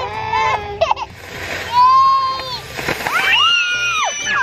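Women and small children shrieking and squealing in long, high cries as a small ground firework shoots toward them, with a couple of sharp pops about a second in.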